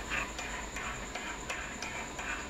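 Metal teaspoon stirring tea in a ceramic mug, clinking lightly against the sides about three times a second.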